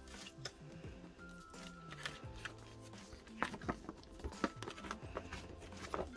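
Soft background music with held notes and a slowly stepping bass line, with the light taps and rustles of a paper album and its inserts being handled.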